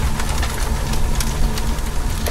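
Sound-effect bed under an animated end logo: a steady low rumble with scattered crackles and clicks.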